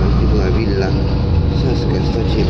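Steady low rumble of a moving city bus heard from inside, with people's voices talking over it.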